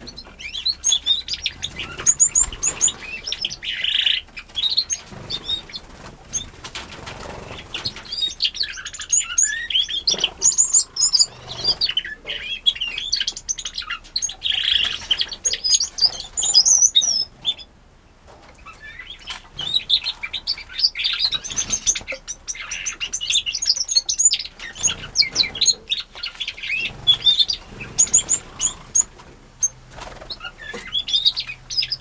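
A mixed aviary of small finches and canaries chirping and calling continually, many short high calls overlapping, with wings fluttering as birds fly between perches and nest boxes. The calling dips briefly just past the middle.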